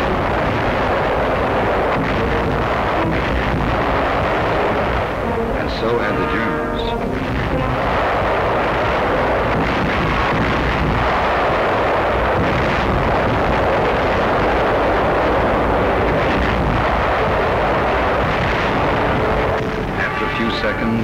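Continuous, dense roar of artillery fire and explosions, a steady wall of battle noise with no pauses.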